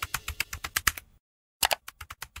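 Computer keyboard typing sound effect: a quick run of about nine key clicks in the first second, a short silence, then a few more clicks near the end.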